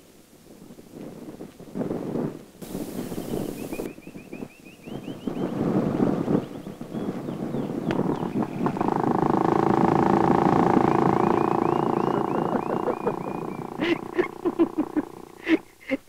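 A motorcycle engine running steadily, swelling to its loudest about ten seconds in and then fading. Before it there are a man's vocal sounds and runs of high chirps.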